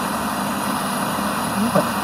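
Steady static hiss from the Sharp QT-88 boombox's radio tuned between stations. Near the end a snatch of a voice breaks through as a station comes in.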